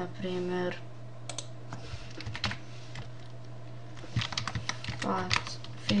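Typing on a computer keyboard as a word is entered: a few scattered keystrokes in the first half, then a quicker run of keystrokes about four seconds in.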